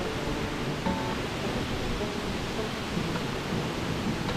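Steady rush of a tall waterfall, the 80-foot Upper Piney Falls, plunging into its pool at close range. Faint background music plays over it.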